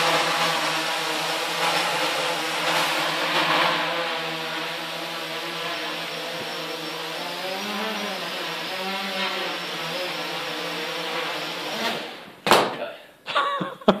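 Small home-built quadcopter's four motors and propellers running with a steady buzzing hum, the pitch wavering up and down as the throttle changes in flight. About twelve seconds in the motors stop abruptly and a few sharp knocks follow as the craft comes down onto the floor.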